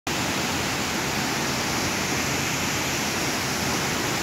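A large waterfall plunging into a pool: a steady, loud rush of falling water.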